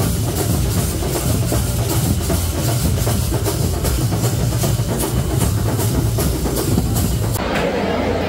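Festival drumming: loud drums beating a steady, fast rhythm with a heavy low end, over the noise of a large crowd. It cuts off abruptly near the end.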